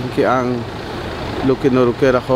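A voice speaking in Spanish, narration over the pictures. After about half a second it pauses for roughly a second, leaving a steady background noise, then resumes near the end.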